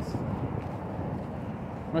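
Steady low outdoor rumble of street ambience, such as distant road traffic, picked up by a phone microphone.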